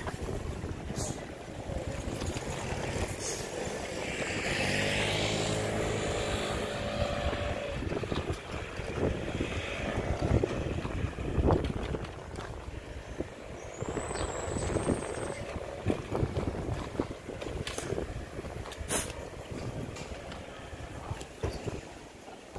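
Street sound of a bicycle ride through town: steady rumble of the ride with wind on the microphone, and a motor vehicle passing about four seconds in. A short high squeal comes around the middle.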